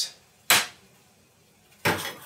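Two sharp clinks of metal kitchenware, a small stainless-steel bowl and utensil, about a second and a half apart, the second with a brief metallic ring.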